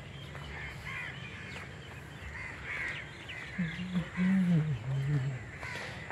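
Open-air park ambience with birds calling faintly in the background. A low, murmured human voice comes in about three and a half seconds in and lasts under two seconds.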